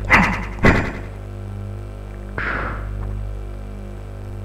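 Experimental electronic sound piece: a steady low hum runs underneath while two sharp hits strike in quick succession in the first second, followed by a softer swishing sweep about two and a half seconds in.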